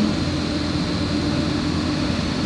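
Steady engine and tyre noise from the vehicle carrying the camera as it drives along a smooth asphalt road, with a constant low hum underneath.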